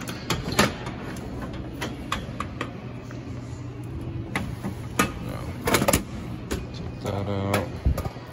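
A key working the lock of a Key Master arcade machine's metal cabinet door, and the door being opened: a string of sharp metallic clicks and knocks, thickest about six seconds in.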